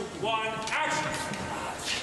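A person's raised voice calling out, with no clear words, in the first second. A short sharp noise follows near the end.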